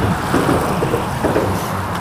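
Wind rushing over the microphone on open water, with choppy water slapping against a small boat's hull: a steady noise with no distinct events.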